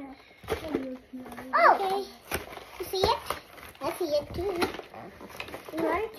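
Young children's voices making wordless sounds, with one loud squeal rising in pitch about one and a half seconds in. A few light knocks from a cardboard box being handled.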